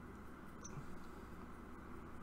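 Quiet room tone: a steady low hum and faint hiss, with one brief faint high squeak or click just over half a second in.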